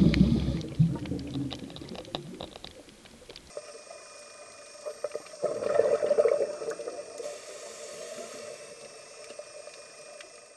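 Underwater sound picked up through a camera housing: a low rushing, gurgling surge of bubbles, typical of a scuba diver exhaling, fading over the first couple of seconds and coming again about six seconds in. Between them a faint steady hiss and hum, which changes abruptly about three and a half seconds in.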